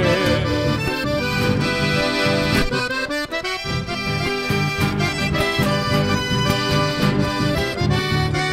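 Chamamé played on accordion, two acoustic guitars and electric bass: an instrumental passage with the accordion leading and no singing. The music dips briefly about three seconds in, then carries on.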